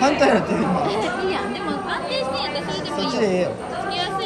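People talking, with crowd chatter around them.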